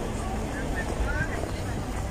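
Outdoor city background noise: a low steady rumble with faint voices in the distance.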